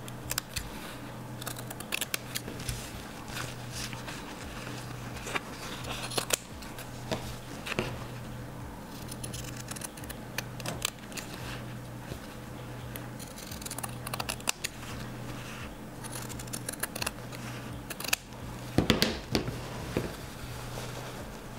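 Scissors cutting through a quilted block of cotton fabric, batting and stabilizer: a long run of irregular snips as the block is trimmed along its cut line, with a low steady hum underneath.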